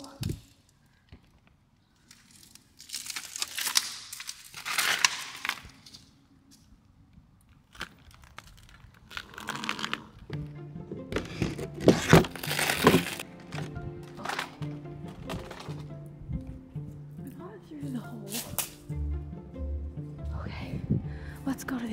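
Shattered window glass crunching and cracking underfoot in several short bursts as someone steps out over a glass-strewn concrete sill. Background music with a steady drone comes in about halfway through.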